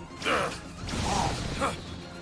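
Animated-series sound effects: three short squeaky bursts with quick sweeping pitch, near the start, just after one second and near the end.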